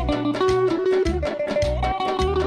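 Azerbaijani folk ensemble playing an instrumental passage on tar, garmon, keyboard and gaval frame drum: a melody of held and stepping notes over a regular pulsing bass beat.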